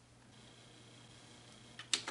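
Quiet room tone with a low steady hum, then two quick sharp clicks near the end: a finger pressing a button on a Tascam digital multitrack recorder.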